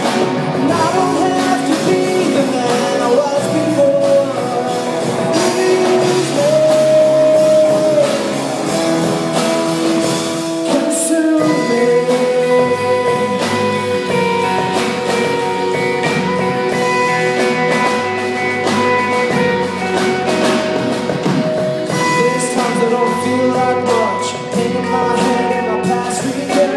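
Live rock band playing: a male singer holding long sung notes over electric guitars, strummed acoustic guitar and a drum kit.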